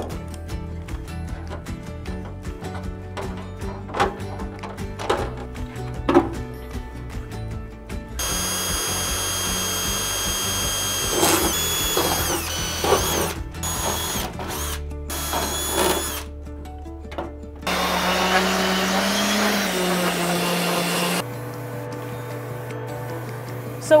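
Cordless drill boring holes through sheet-aluminum patch and skin in a few separate runs, the motor's whine dipping and rising in pitch as the bit bites, over a background music bed.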